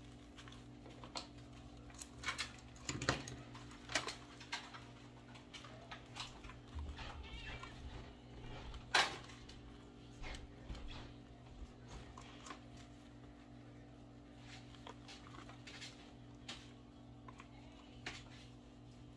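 Light scattered clicks and taps from hands working with a hot glue gun and craft materials, with one sharper click about nine seconds in, over a steady low hum.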